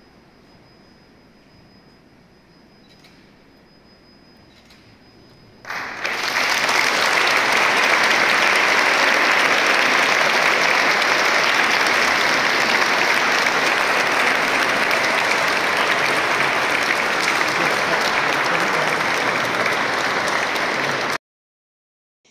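A church congregation applauding: a low, quiet stretch with faint clicks, then applause starting suddenly about six seconds in and holding steady and loud until it cuts off abruptly near the end.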